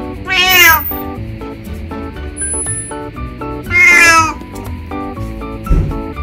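A 20-year-old calico cat meowing twice, each a loud call about half a second long, the second about three seconds after the first, over background music. A short low thump comes near the end.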